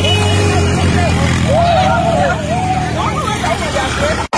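A crowd shouting and celebrating close by, voices rising and falling in pitch, over a steady low rumble from a motorcycle engine running nearby.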